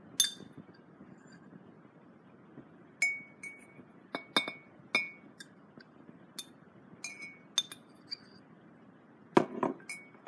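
Hard bowl clinking: a dozen or so sharp clinks, several with a short ring, spaced irregularly, with a louder cluster near the end.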